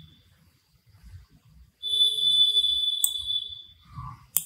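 A steady, high electronic beep tone that starts a little before the middle and holds for about two seconds, like a beeper or alarm sounder; a single mouse click sounds about three seconds in.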